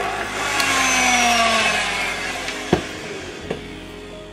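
Electric hand mixer whirring as its beaters mix seasoning into thick mayonnaise, the motor's pitch slowly falling and the sound fading toward the end. Two sharp knocks in the second half.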